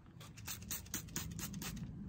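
Plastic trigger spray bottle being squeezed again and again, a quick run of short, sharp spritzes about five a second.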